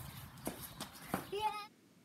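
Faint, scattered light taps of a child's sneaker footsteps on a concrete floor, followed near the end by a brief high-pitched child's voice.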